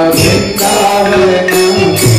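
Devotional chanting (kirtan): voices singing a melodic chant with instrumental accompaniment and a jingling metallic percussion that strikes about twice a second.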